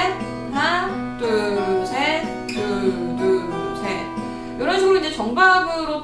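Cort Gold O6 acoustic guitar fingerpicked in a lilting 6/8 pattern, the notes ringing over a steady bass.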